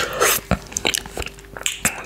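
Close-miked wet mouth sounds of licking soft coconut yogurt off a finger: a burst of sucking and smacking at the start, then scattered sharp lip and tongue clicks.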